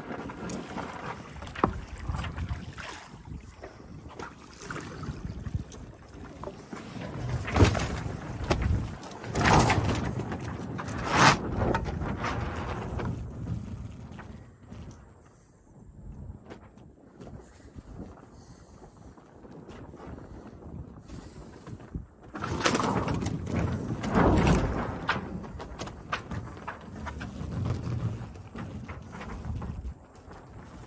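The sails and rigging of an ocean-racing sailboat shaking and slatting as a swell rocks the boat in a windless calm: irregular flapping and knocks, loudest in two spells about a third of the way in and again about three quarters through, with a quieter lull between.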